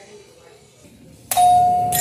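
A store's glass front door is pushed open about a second and a half in, and a single steady electronic beep starts at once with a burst of noise, the door's entry chime or alert going off.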